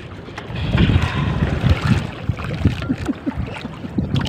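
Wind buffeting the microphone and sea water splashing around a small wooden outrigger boat (banca) on choppy open water, louder from about a second in, with irregular low knocks.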